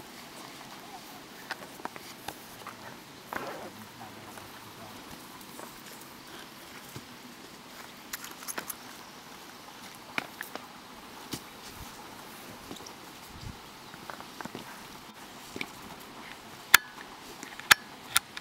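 Quiet outdoor ambience with scattered light knocks and rustles, and two sharp clicks near the end.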